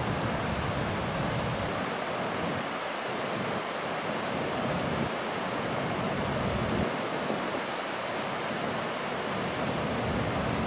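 Steady rush of river rapids, with wind buffeting the microphone in a low rumble that comes and goes.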